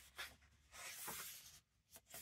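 Faint paper rustling as the pages of a hardback illustrated book are turned by hand: a brief rustle just after the start, then a longer one lasting about a second.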